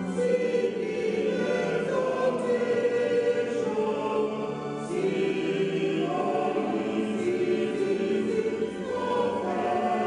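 Church choir singing a hymn, the voices holding long notes that step to new pitches every second or so.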